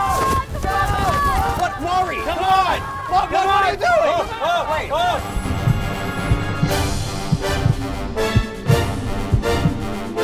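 Several people yelling and cheering, their voices rising and falling over one another. About five seconds in, background music with a steady beat takes over.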